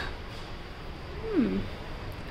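A person's brief voiced sound, one short falling murmur about halfway through, over a steady low background rumble.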